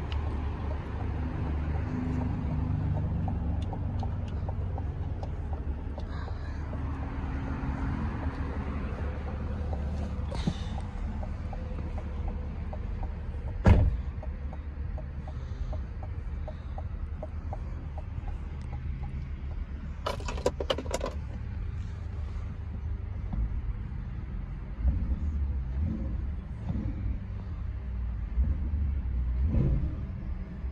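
The 2020 Corvette Stingray's 6.2-litre V8 idling with a steady low rumble, heard from inside the cabin. A single sharp knock comes about 14 seconds in, and a short run of clicks about 20 seconds in.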